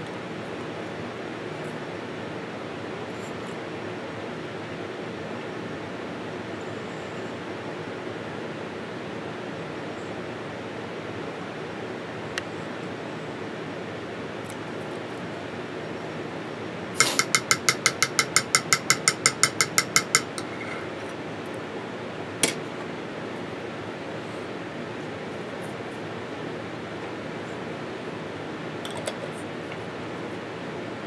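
A metal spoon scraping quickly around the inside of a glass jar, about fourteen rapid strokes over three seconds, each one making the jar ring. Otherwise a steady low room hum with a couple of single clicks.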